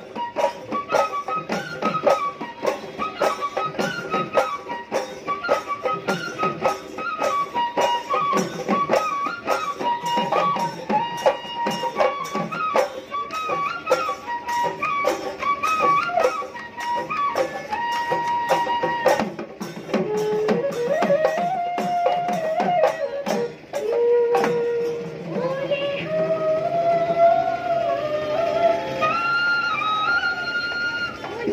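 Live Bihu folk music: dhol drums beating a fast, dense rhythm under a stepped melody line. In the last third the drumming thins out while a sliding melody carries on.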